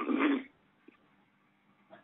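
A brief non-word vocal sound from a caller at the start, heard through a telephone line, then the line goes quiet with only faint hiss.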